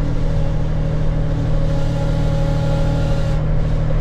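Case IH tractor's diesel engine running at a steady speed, heard from inside the cab as an even low drone.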